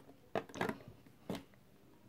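A few faint, short rustles and clicks, about three in two seconds, typical of handling noise from a handheld phone recording.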